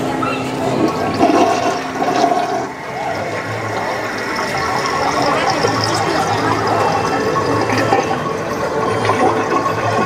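Animated toilet in a shop-window display playing a toilet-flush sound effect, water rushing steadily, set off by a wand spell.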